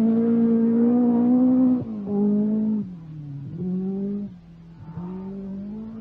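Peugeot 205 T16 Group B rally car's turbocharged engine held steady at high revs for about two seconds, then breaking off and picking up again several times at lower pitch, getting fainter as the car moves away.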